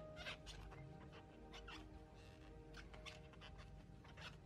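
Near silence: faint background music, with soft rustles and clicks of a crochet hook working yarn.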